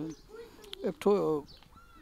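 Speech only: a man's voice saying a couple of words about a second in, between quiet pauses.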